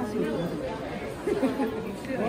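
Indistinct chatter of people's voices, with no other distinct sound.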